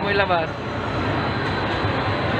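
Steady rumbling noise in the gondola of a moving mall Ferris wheel ride: the ride's machinery running under mall crowd hubbub. A child's voice trails off about half a second in.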